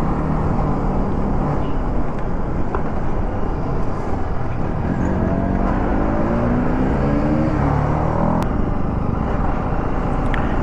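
TVS Apache RR 310 single-cylinder motorcycle engine running at road speed, heard from on the bike under a steady rush of wind noise. About halfway through, the engine note climbs for roughly three seconds as it pulls through a gear, then drops away.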